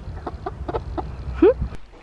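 A young hen clucking softly while held and stroked: a quick series of short clucks, then one rising call about one and a half seconds in.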